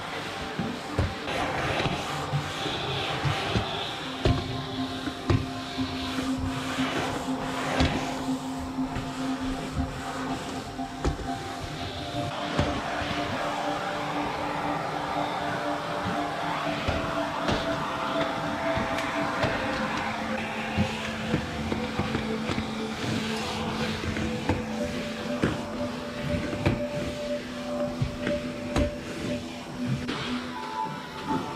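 Calm background music of slow, held notes that change every few seconds, over the steady rush of a vacuum cleaner's suction at the floor nozzle. Frequent short knocks as the nozzle and wand bump across the wooden floor and furniture.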